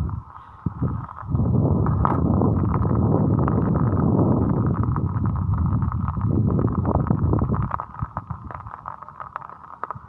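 Wind buffeting a phone's microphone: a loud low rumble full of crackles that dips briefly in the first second and eases off over the last couple of seconds.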